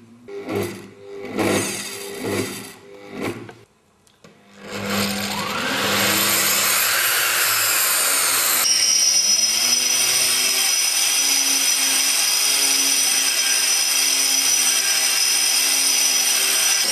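Eibenstock EBS 1802 1800 W concrete grinder, first heard in a few short bursts. About four and a half seconds in it spins up gently on its soft start, rising in pitch, then runs steadily at full no-load speed with a high whine.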